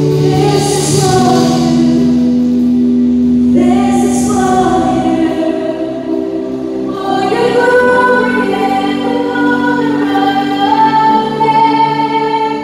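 A live Christian worship band playing and singing a slow song. Voices sing long held notes over keyboard and electric guitars.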